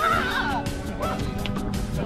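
Background music, with a high voice wavering in pitch near the start.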